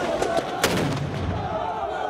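A single sharp gunshot a little over half a second in, over men's voices shouting amid the firing.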